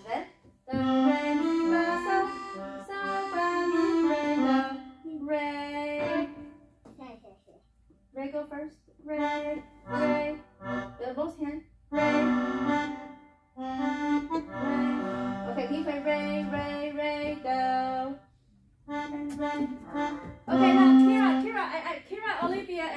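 Electronic keyboards playing a simple melody in held notes. The phrases are a few seconds long, with short pauses between them.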